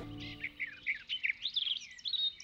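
Small birds chirping, a rapid run of many short, high chirps, several a second.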